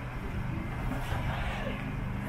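A motor running steadily with a low, even hum, like an idling engine or generator, over light open-air background noise.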